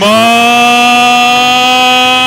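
A man's voice holding one long shouted vowel, sliding up at the start and then steady in pitch: the announcer drawing out his call as the charro throws at the mare.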